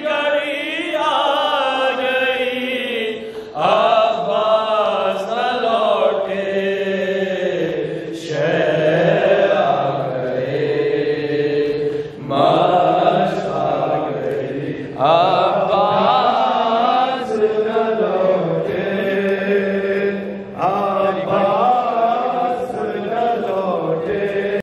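Male voices chanting a devotional Shia mourning kalam (noha) into a microphone, voice only, in long melodic phrases that break off and start again every few seconds.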